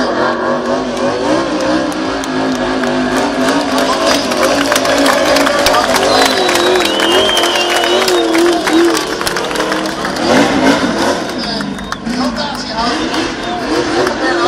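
Race car engine revving hard, its pitch wavering up and down as it spins its rear wheels through burnouts and drifts, with speech mixed in over it.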